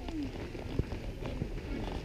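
Footsteps on a paved path, about one step every half second, with faint voices in the background.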